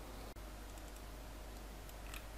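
Steady faint hiss and low hum of a desktop microphone's noise floor, with a few faint clicks from computer controls about a second in.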